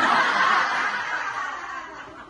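A roomful of people laughing together, loudest at the start and dying away over the two seconds.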